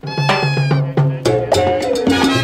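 Late-1950s mambo band music starting a new track: a high, bending lead phrase over a repeating bass line, with the full band coming in about a second in.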